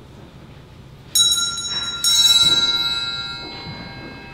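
Altar bell struck twice, about a second apart, each strike ringing on with clear bright tones and fading slowly. It is rung during the Eucharistic Prayer, marking the approach of the consecration.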